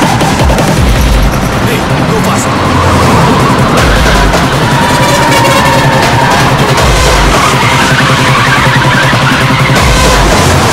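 Action-film soundtrack: background music mixed with heavy truck engines running and tyres skidding.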